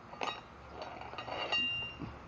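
Metal hand tools clinking against each other in a tool belt pocket: two short knocks, the second leaving a brief metallic ring.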